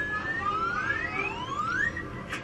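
An added rising-pitch sound effect: several overlapping whistle-like tones glide steadily upward, one after another, the last topping out just before the end.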